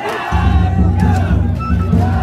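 Festival float's big taiko drum beaten in a fast, steady rhythm, starting about a third of a second in, with crowd shouts over it.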